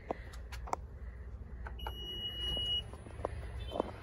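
A single high electronic beep, one steady tone about a second long, near the middle, over a low steady rumble with a few light clicks.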